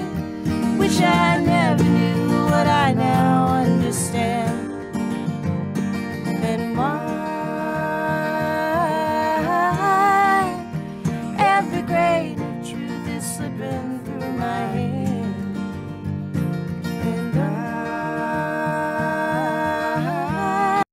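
Multitrack playback of a song: a woman singing over two acoustic guitars, with the balance and left-right panning of the guitar and vocal tracks being adjusted on the mixer's faders as it plays.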